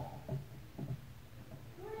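A pause in the preaching: two brief, faint pitched vocal sounds from somewhere in the room over a low steady hum.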